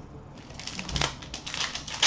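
A pack of hockey trading cards being handled and opened by hand: a quiet run of light clicks and rustles of card and wrapper.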